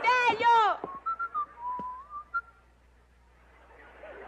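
A man whistling a short wavering tune for about a second and a half, with a single light knock partway through. Just before the whistling, a falling vocal cry is heard.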